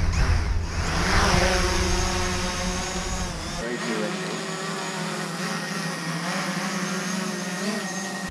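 Small quadcopter drone's propellers whining as it spins up and flies, the motor pitch shifting a little as it is steered. Wind rumbles on the microphone for the first three and a half seconds.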